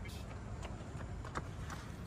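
Low outdoor background noise with a few faint, sharp clicks spread irregularly through it.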